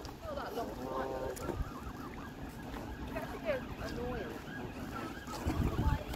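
Several Canada geese calling, with many short honks and calls overlapping one another. A low wind rumble on the microphone runs underneath.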